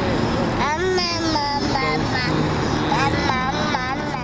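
A toddler's high voice babbling and squealing, its pitch sliding up and down, inside a moving car over steady road noise.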